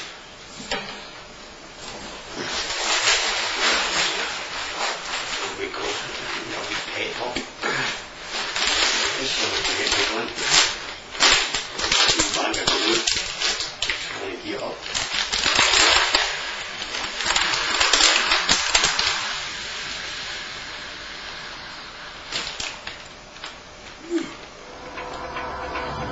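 A plastic bag crinkling in the hands, with loud rushing sniffs and breaths drawn in and out of it, in irregular bursts: mock glue-sniffing.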